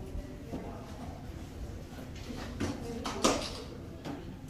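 Low, steady rumble of a large hall with a few short knocks, the loudest just past three seconds in.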